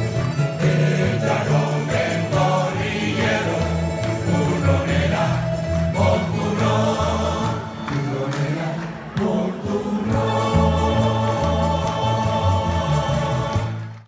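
Canarian folk group of strummed guitars and lutes with a mixed choir singing together, the last bars of a song, closing on a long held chord that cuts off suddenly at the end.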